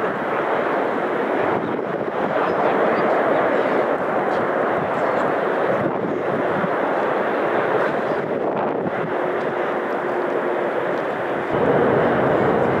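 Steady rushing outdoor noise with no clear single source and no distinct events.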